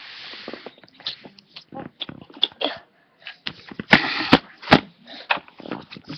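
Breathy, unpitched bursts of a person's voice close to the microphone, with a few sharp clicks about four seconds in.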